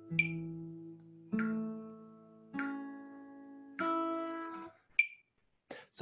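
Acoustic guitar played fingerstyle: four chords plucked a little over a second apart, each ringing and fading before the next. A short high squeak comes near the end.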